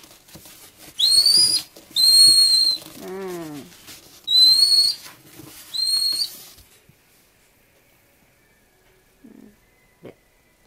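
African clawless otter pup calling with high, whistle-like squeaks: four short calls about half a second each, spaced roughly a second or more apart, that stop about two-thirds of the way in. The calls may be a sign that it is getting hungry.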